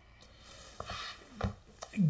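A man drawing a breath between sentences, with a few soft mouth clicks.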